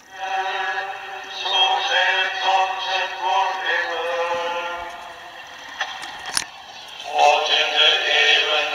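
Singing from a religious medium-wave radio station, received by a homemade FET radio and played through a small loudspeaker. There is a single sharp click about six and a half seconds in.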